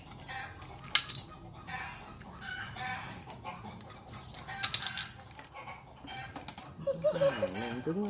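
Sharp clicks and cracks of a boiled crab's claw shell being cut and picked apart with kitchen scissors, a few at a time, loudest about a second in and again near the middle.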